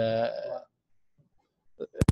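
A man's voice holding one drawn-out syllable at a steady pitch, breaking off about half a second in, followed by a pause of near silence.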